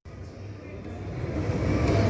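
Food-court background noise: a low rumble with faint chatter, fading in over the first second and a half, then steady.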